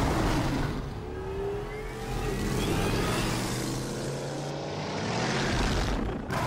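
Film sound effect of the Tumbler Batmobile's engine: it starts with a sudden loud burst, then keeps running with a deep steady note, rising in pitch for a moment about two seconds in.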